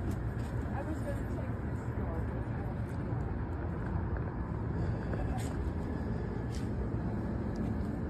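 Steady low engine rumble of an idling rental box truck, with a person talking faintly over it.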